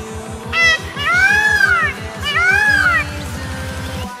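Three loud, rising-then-falling wailing calls from a peacock, the middle one the longest, over electronic dance music with a steady beat.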